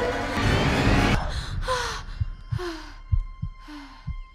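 A loud, noisy first second gives way to a series of heavy gasping breaths, each sliding down in pitch, as from a frightened character. Soft low thuds like a heartbeat sound under them, with a steady high musical drone.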